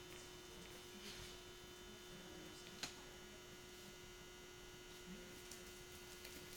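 Near silence with a steady electrical hum, and a single faint click a little under three seconds in.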